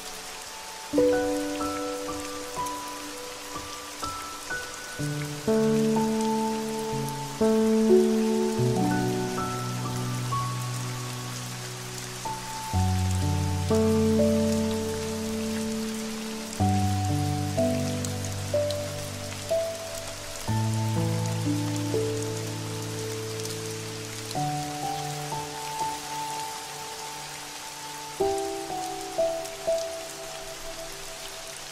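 Steady rain falling, under slow, calm music of soft struck notes and chords that change every second or two.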